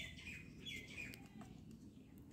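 Faint bird chirps: a few short, high calls, mostly in the first second, over low background hiss.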